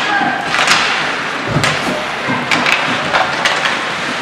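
Ice hockey play on the rink: skate blades scraping the ice with sharp clacks of sticks and puck, and a heavier thump about one and a half seconds in.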